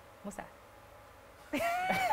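A person's drawn-out, high-pitched vocal sound, held for about half a second and leading into laughter, starting after about a second of quiet.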